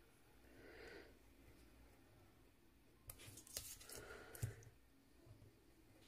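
Near silence: a craft scalpel cutting through patterned card on a cutting mat, giving a few faint light clicks, with two soft breaths, one just before a second in and one around four seconds in.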